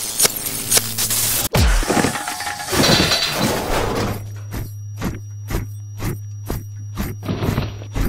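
Cartoon sound effects of a particle collision: a jumble of crashes, shattering and whacks over music, cut off abruptly about a second and a half in and followed by more clattering noise. From about four seconds a regular ticking beat, about three a second, runs over a steady low hum.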